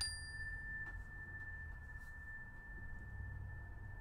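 A struck metal chime rings with one steady high tone throughout; a fresh strike right at the start adds higher overtones that die away within a second.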